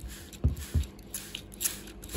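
Hand trigger spray bottle pumped several times, each squeeze a short spritz of water mist with a click and a light bump from handling.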